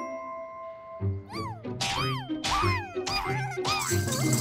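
Cartoon background music: a held note fades out, then about a second in a bass pulse starts under a run of short, high wails that rise and fall, about two a second.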